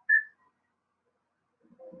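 A single short, high chirp-like tone just after the start, then quiet. Near the end a man coughs as he begins to speak.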